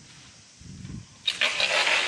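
A large dead tree being shifted, its dry branches and twigs scraping and rustling over plastic sheeting: a low bump a little past half a second in, then a loud rustling scrape from about a second and a quarter in.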